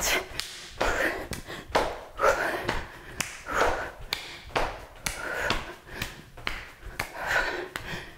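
Jumping jacks with an overhead clap: sharp hand claps and bare feet landing on a mat, in a steady rhythm of about two a second. Heavy panting breaths come between the strokes.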